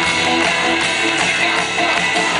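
Live pop-rock band playing an instrumental passage with electric bass and guitars, recorded from the audience at a concert.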